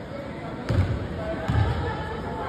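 A basketball bouncing twice on a hardwood gym floor, two deep thuds a little under a second apart, echoing in the gym.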